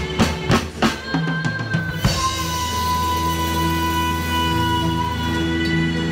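Live rock band with drum kit: a quick run of drum hits in the first second or so, then the band holding one long sustained chord with a high held note.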